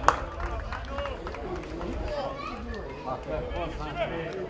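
Footballers' voices calling and shouting across an open pitch, with a sharp knock right at the start.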